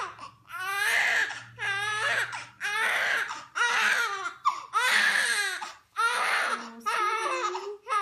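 Newborn baby crying: a run of about seven short, high-pitched wails, roughly one a second, with quick breaths between them.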